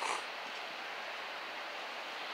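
Steady, even hiss of outdoor background noise with no distinct event in it.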